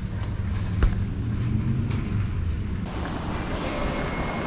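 Low rumble of a motor vehicle in a parking lot, with a few sharp knocks. About three seconds in, it cuts abruptly to a brighter, steady hiss of background noise with a faint high tone.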